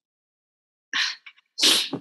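Two short, sharp breath sounds from a person, the second longer and louder, about two-thirds of a second apart.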